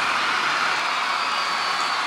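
Live audience applauding as the salsa number ends: a steady, even wash of clapping.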